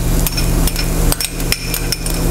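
Metal spoon tapping and scraping against a small glass bowl, knocking chopped garlic out into a pan of warm olive oil: an irregular run of sharp clicks and clinks.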